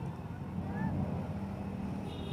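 Busy street traffic: motorcycle engines running in the street, with a steady low hum and people talking in the background.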